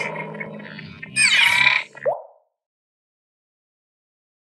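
Animated logo sting made of sound effects: a noisy whoosh dies away, then about a second in comes a brighter burst with sweeping tones. A short rising plop follows about two seconds in, and then the sound cuts off.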